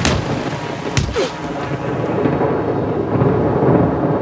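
Film-trailer sound design: a heavy hit right at the start and another about a second later, over a loud, continuous rumbling wash of noise.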